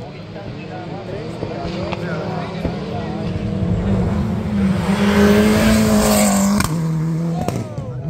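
Rally car racing along a gravel special stage, its engine note growing steadily louder as it approaches, with a rising rush of noise at its loudest. About two-thirds of the way in, the engine note drops suddenly to a lower pitch as the car goes by.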